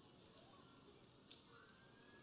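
Near silence: faint room tone, with one short soft click about 1.3 seconds in.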